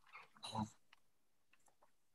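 Mostly near silence, with one short, faint vocal sound about half a second in.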